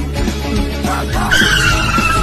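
A tyre-screech sound effect: a high squealing tone that sets in past halfway and slowly falls in pitch, over background music.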